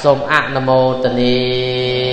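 A man's voice chanting: a few quick syllables, then one long note held at a steady pitch from about half a second in.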